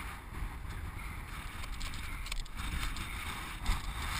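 Wind buffeting the camera's microphone: a steady, uneven low rumble with a hiss above it.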